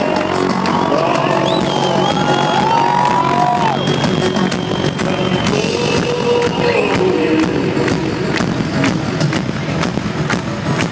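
Live electronic rock band playing loudly through a stadium sound system, recorded from among the crowd, with the crowd cheering over the music.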